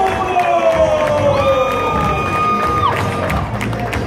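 A wrestler's entrance music played over an arena PA, with the crowd cheering.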